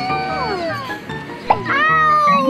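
A woman's pretend crying: a few drawn-out wails that fall in pitch, over background music.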